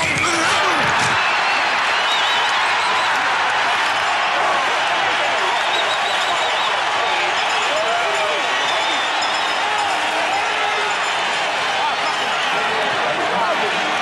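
Stadium crowd noise: a steady roar of many voices shouting together, with a few single yells rising out of it now and then.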